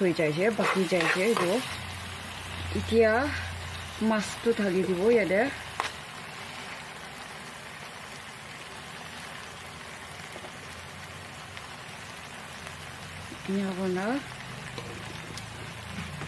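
Tamarind masala and fried rohu fish pieces sizzling steadily and softly in oil in a frying pan. The oil has separated from the masala, the sign that the masala is cooked through.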